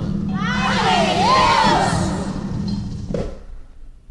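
Umbanda devotional song for Oxum: a sung phrase whose pitch glides and wavers over a steady low held tone. It fades toward the end, with a short thump about three seconds in.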